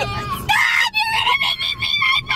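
A woman's high-pitched shrieking laughter, in a string of squeals from about half a second in, inside a moving car with the engine rumbling low underneath.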